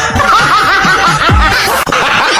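Laughter, with music underneath.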